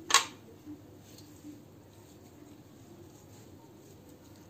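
A single sharp click of kitchen utensils being handled just after the start, followed by two faint taps, then quiet room tone.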